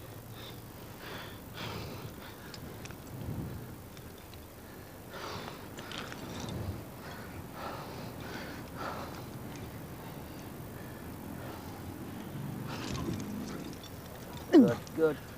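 Faint scuffs, rustles and a few light clicks of a climber moving up a rock crack, over a steady low background hiss.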